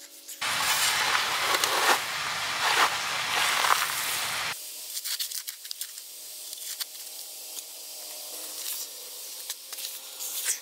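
Hands digging and scraping in loose soil and wood-chip mulch: a loud stretch of scraping and rustling that cuts off abruptly about four and a half seconds in, then quieter rustles and small ticks of dirt as the pipe is worked through.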